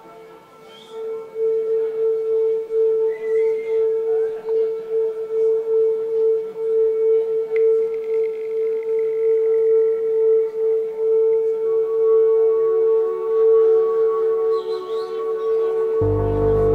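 A single held synthesizer note starts about a second in and sustains with a slight pulsing in loudness. Near the end, a higher note and a lower note join it as the next song builds.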